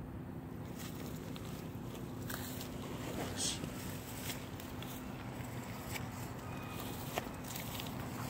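Rustling and scattered light knocks of a handheld phone being moved against a hooded sweatshirt, over a steady low hum.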